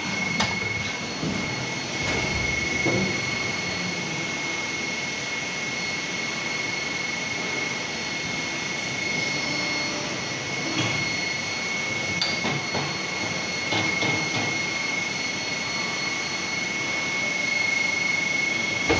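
Plastic injection molding machine running through a molding cycle with a 12-cavity spoon mold: a steady machine hum and hiss with a thin high whine throughout, broken by a few short clunks and clicks as the mold clamps and the machine works.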